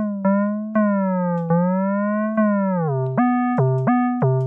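Critter & Guitari 201 Pocket Piano's additive synth engine playing a run of notes with portamento, each note gliding in pitch into the next. The notes are held longer with slow bends at first, then step up and down in quicker, shorter notes near the end.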